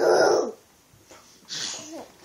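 A baby's voice: a loud, short squeal falling in pitch, then a laugh about a second and a half in.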